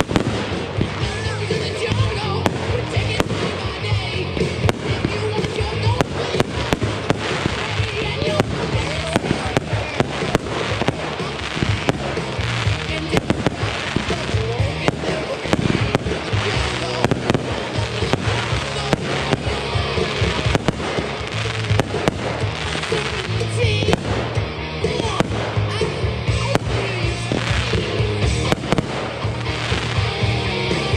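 Aerial fireworks going off in quick succession, many sharp bangs and crackles one after another, with music playing underneath throughout.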